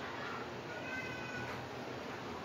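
Whiteboard marker squeaking as it is drawn along the board: one high squeak lasting about a second, near the middle.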